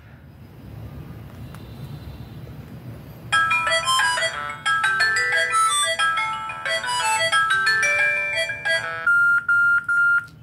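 Q-Mobile Q267 MediaTek feature phone playing its synthesized start-up jingle through its small speaker as it powers on: a quick many-note melody starting about three seconds in. Near the end it gives a few short beeps on one pitch, its low-battery warning.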